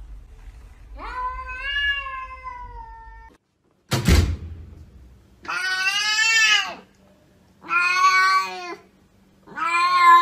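Domestic cats meowing: one long meow, cut off suddenly, then a short thud, then three meows, the last one long and drawn out.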